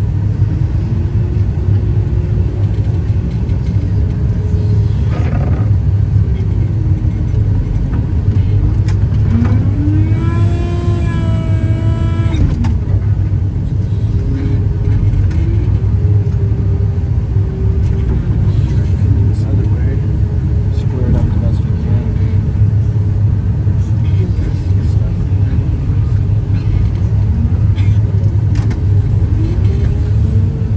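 Rotary snowblower's engine and blower head running hard under load, heard from inside the cab: a steady heavy drone with a pitched whine that rises and falls as the load changes. A brief higher, steadier tone comes about ten seconds in.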